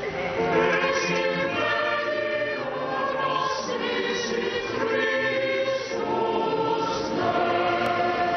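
A choir singing a sacred chant during the offertory of a Catholic Mass, several voices holding long notes that shift pitch every second or so.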